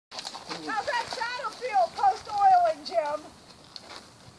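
A person talking for about three seconds, the words unclear, then it drops to quiet background.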